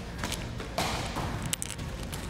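Volleyball thrown at wall targets, hitting and bouncing: a few thuds and knocks, the loudest a little under a second in.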